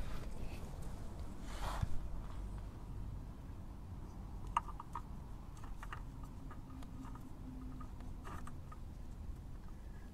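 Faint handling noises as a gloved hand fits a motorcycle oil filter back onto the engine: a brief rustle early on and a few small clicks, over a low steady background rumble.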